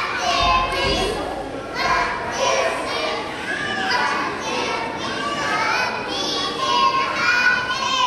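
A group of young children singing together, many high voices slightly out of step with one another.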